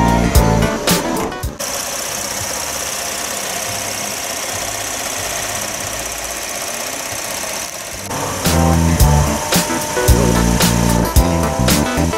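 The GMC Terrain's direct-injection V6 idling steadily for about six seconds from a second and a half in. Background music with a beat plays before and after.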